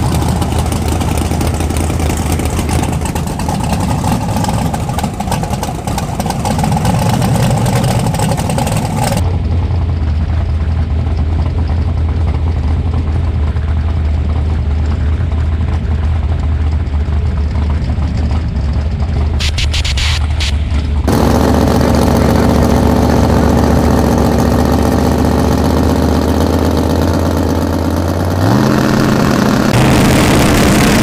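Drag-race car engines running loudly at a steady idle, with the sound changing abruptly twice. Near the end one engine's pitch steps up and holds higher as it is revved.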